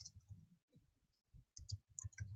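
A few faint, scattered clicks from working a computer's keyboard and mouse.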